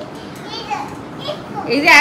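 A small child chattering, with a woman starting to speak near the end.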